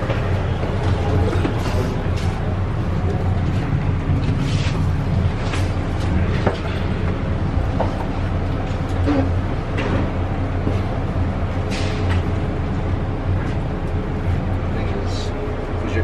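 Cabin sound of the SFO AirTrain, a rubber-tyred automated people mover, running along its guideway: a steady low drone with occasional faint clicks and knocks.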